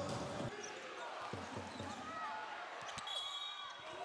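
Faint basketball arena sound: a ball bouncing on a hardwood court in a few low knocks, over distant crowd voices.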